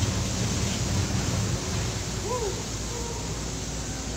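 Steady low rumbling noise of wind and harbour background, with a brief faint distant voice a little past halfway.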